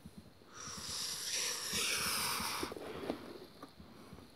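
A person blowing out a long breath, lasting a little over two seconds.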